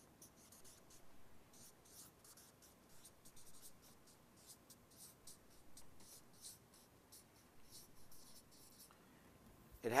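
Faint scratching of someone writing with a marker: short, irregular strokes for several seconds.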